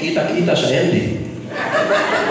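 Voices talking and laughing, a man's voice among them, with chuckling.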